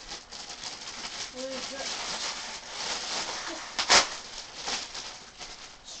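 Rustling and flapping of a minion costume's fabric as it is pulled on and adjusted, with a sharp knock about four seconds in.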